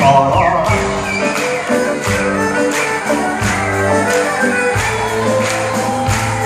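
Live band playing an instrumental passage, with plucked strings, double bass and a steady drum beat, and no vocals.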